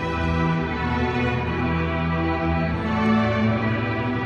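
Middle school string orchestra playing, a full ensemble sound of bowed violins, cellos and basses moving through long held notes and chords.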